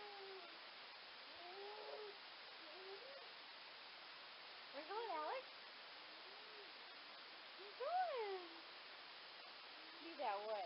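A cat meowing several times, each meow a short rise and fall in pitch, a second or more apart, the loudest one near the end.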